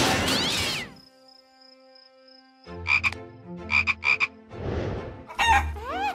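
Cartoon frog croaking: three short croaks about halfway through, after a falling swoop that stops about a second in.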